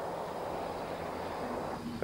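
Steady, even outdoor background noise: a featureless hiss with a faint low hum and no distinct events.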